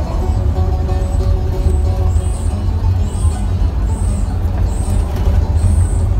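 Steady low engine and road rumble inside a moving coach bus, with music playing over it and a regular high swishing beat about once a second from about two seconds in.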